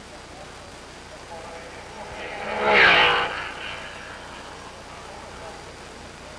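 A racing car passing by at speed: its engine note swells to a peak about three seconds in, drops in pitch as it goes past, and fades away.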